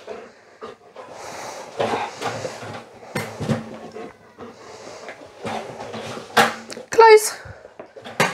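A dog panting and moving about at a metal toy letterbox, with a sharp knock about six and a half seconds in as the lid is worked. A woman's drawn-out spoken cue follows near the end.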